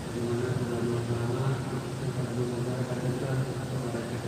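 A man's voice intoning a prayer in Arabic on long, level held notes, with short breaks between phrases.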